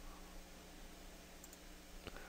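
Near silence: faint steady hum and hiss of room tone.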